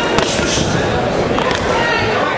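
Crowd noise with scattered shouting voices, cut by sharp smacks of boxing gloves landing: one just after the start and another a little past the middle.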